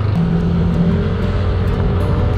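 Motorcycle engine running steadily as the bike rides along the street.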